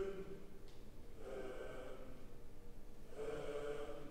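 Recorded choir chanting in short phrases that come about every two seconds, with quieter gaps between them.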